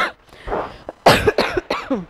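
A woman coughing, a few short coughs, the loudest about a second in.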